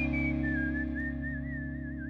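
Someone whistling a slow melody line, the last note held with a wide, wobbling vibrato, over a held chord from the band that slowly fades away.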